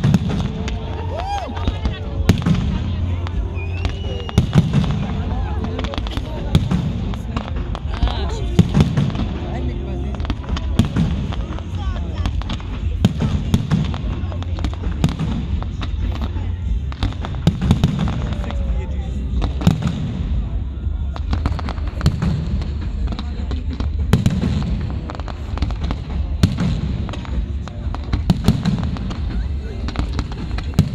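Fireworks display: aerial shells bursting overhead in a rapid, continuous series of bangs and booms.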